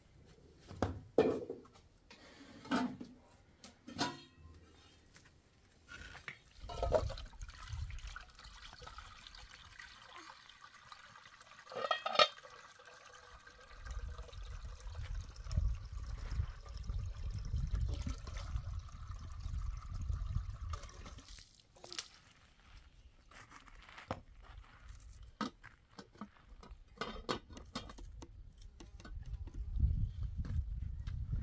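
Water from a garden hose running into a metal cooking pot as it is filled and rinsed, with knocks and clanks of the pot being handled.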